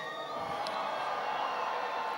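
Large outdoor crowd cheering and calling out, a steady wash of many voices.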